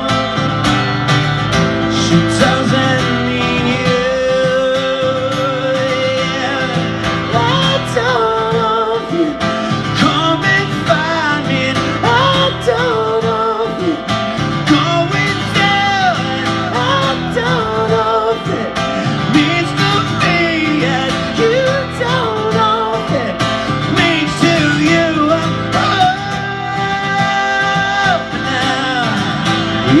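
Live acoustic guitar strummed through a PA, with a male voice singing a wavering melody over it.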